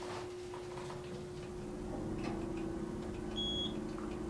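Hydraulic passenger elevator car rising, with a steady machinery hum throughout and a second, lower hum joining about two seconds in. A single short high beep sounds near the end as the car reaches floor 1.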